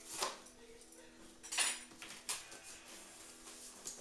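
Cardboard boxes being handled and shifted: four short scraping rustles, the loudest about one and a half seconds in, over a faint steady hum.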